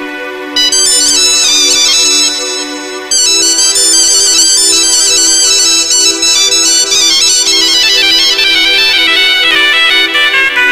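Music from a virtual arranger-keyboard program: a melody in quick runs of notes over a steady held drone, with a short drop in the playing just before three seconds in.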